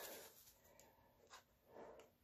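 Near silence, with a faint tick a little over a second in and a soft scrape near the end: small handling sounds of fingers and tools on a bare laptop hard drive.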